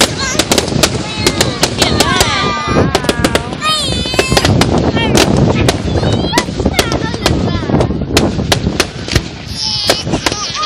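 Fireworks display going off: a dense, continuous run of sharp bangs and crackles from aerial bursts, with high wavering tones sounding over them.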